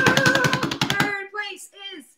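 A drum roll drummed fast with hands on a tabletop, a quick run of taps that stops about a second in, with a held voice over its first moment; a few short voice sounds follow.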